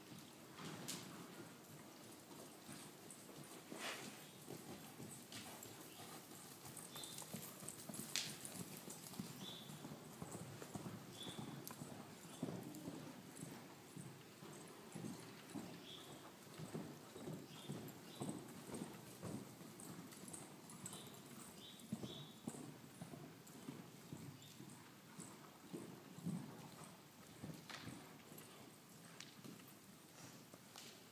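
A horse cantering on soft sand arena footing, its hoofbeats coming in a steady rhythm.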